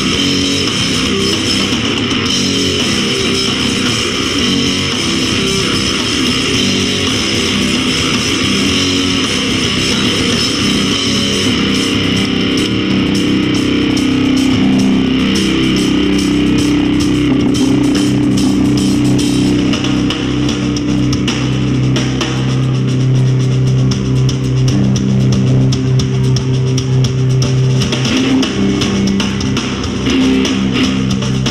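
Live rock band playing loud electric guitar, bass guitar and drum kit. The drumming grows busier about twelve seconds in, under long held low notes.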